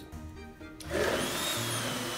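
Immersion blender switching on about a second in and running steadily in a stainless steel beaker of water and egg-white protein, with a low hum and a faint high whine.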